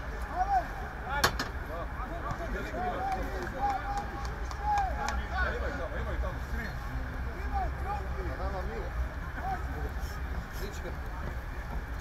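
Distant shouting voices of football players calling out on the pitch over a steady low rumble, with one sharp knock about a second in.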